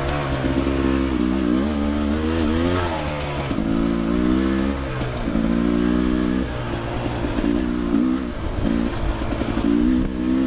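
Dirt bike engine, ridden from the bike along a rocky trail. The throttle is opened and closed over and over, so the engine note rises and falls in several short bursts of about a second each.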